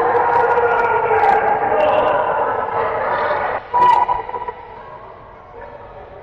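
Many voices shouting and cheering, dropping off suddenly after about three and a half seconds, with one brief loud call just after and a few sharp knocks.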